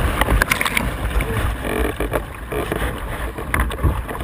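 Whitewater rushing and splashing over a kayak and its deck-mounted camera while the boat runs a rapid, with a low rumbling buffeting on the microphone. It is loudest in the first couple of seconds and eases after that.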